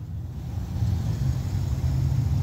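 Low, steady motor-vehicle engine rumble heard from inside a car's cabin, slowly growing louder through the pause.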